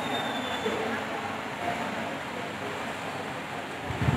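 Steady room noise with indistinct background voices, no clear words and no distinct knocks or tones.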